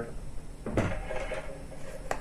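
Soft handling noise of a camera and a handheld RC transmitter being moved, with a brief scuff about three-quarters of a second in.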